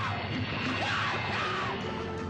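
Horror film soundtrack: music with a person yelling over it in several rising-and-falling cries.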